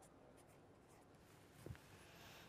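Faint scratching of a pen writing on paper, with a brief soft knock near the end.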